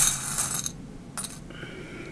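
Tarot cards being shuffled and handled, a papery rustle that stops suddenly just under a second in. A single short click follows about a second later.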